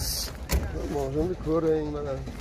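A single sharp click about half a second in from the tailgate of a Lada Samara (VAZ-2109) hatchback being handled at its latch, after a brief hiss, with a man talking over the rest.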